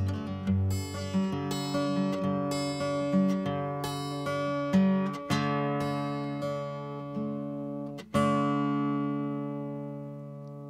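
Acoustic guitar playing the closing bars of a folk song: a run of picked notes, then strummed chords, ending on a final chord just after eight seconds in that rings on and slowly fades.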